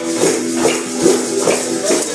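Acoustic guitar strummed on a held chord, with a maraca shaken in steady time, about two to three strokes a second.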